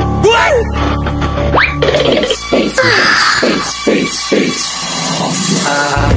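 Background music with cartoon sound effects: a few quick sliding pitch glides in the first two seconds, then a steady pulsing beat.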